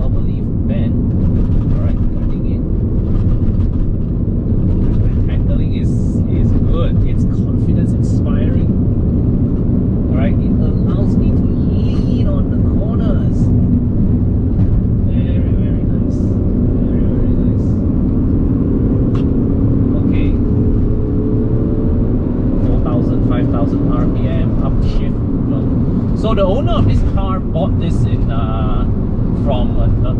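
Steady engine and road drone inside the cabin of a moving Alfa Romeo 156, with a man's voice talking over it.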